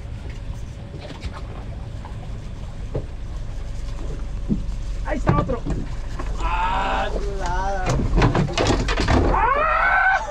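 A steady low rumble of wind and water around a small boat. About halfway through, men's voices call out without clear words, getting louder toward the end.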